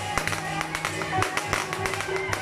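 Loud temple-procession music: a held, slightly wavering melody over frequent percussion strikes.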